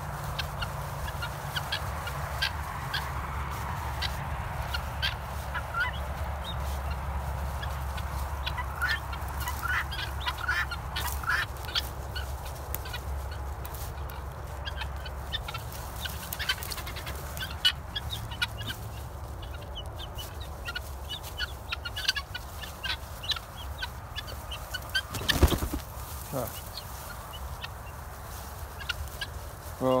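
A flock of 15-week-old guinea fowl calling, many short scattered chirps over a low steady rumble. A sharp knock sounds about 25 seconds in.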